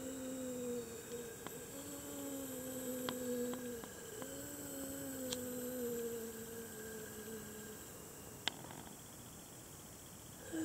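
A person humming long held notes that slowly sink in pitch, in three stretches, stopping a little before the end. A few faint clicks fall among them.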